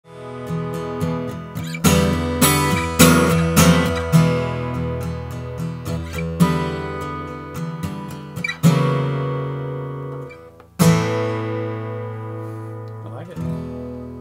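A Gibson Hummingbird square-shoulder dreadnought acoustic guitar, with a spruce top and mahogany back and sides, played as a rock intro. Light picked notes give way to loud strummed chords about two seconds in. Later a big chord rings out, and a final chord struck about eleven seconds in fades until it stops shortly before the end.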